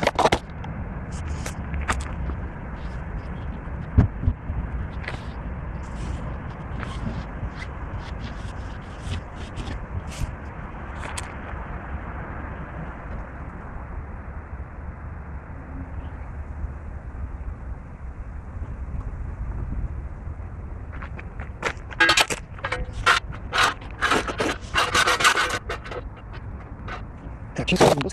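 Scraping and clattering on gravel as a bottle jack and a steel support are set under a car: scattered single clicks, then a dense run of scraping about three-quarters of the way through, over a steady low rumble.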